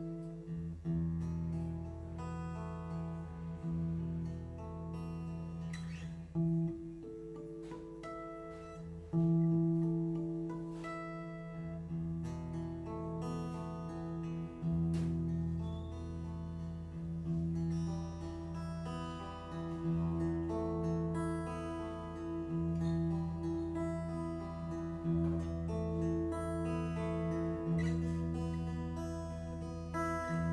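Solo acoustic guitar playing a slow fingerpicked instrumental: held bass notes that change every few seconds, under a picked melody line.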